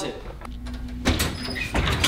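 Wooden storage cabinet door swung open and a person climbing out of it, with a couple of knocks and scrapes, about a second in and again near the end.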